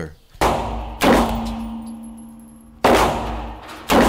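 Revolver fired four times in an indoor shooting range, each shot echoing and dying away. The second shot follows quickly after the first, then there is a pause, and the last two come about a second apart.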